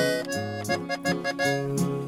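Button accordion playing a short instrumental fill between sung lines of a ranchera, with guitar strummed underneath in a steady rhythm.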